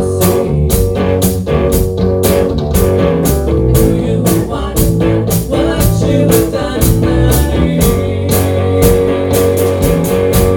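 Rock band playing live on electric guitars and drum kit, with a steady beat of cymbal and drum hits about four a second.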